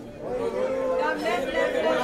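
Overlapping voices of photographers chattering and calling out at once, getting louder about a third of a second in.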